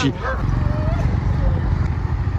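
Small motor scooter engine, just repaired, running with a steady low rumble.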